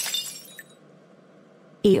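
Glass shattering: a sudden crash with clinking that dies away over about half a second. A voice starts near the end.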